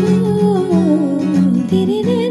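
Acoustic guitar chords under a female voice humming a slow, wordless melody that slides gradually downward in pitch: the intro of a Sufi song cover, before the lyrics begin.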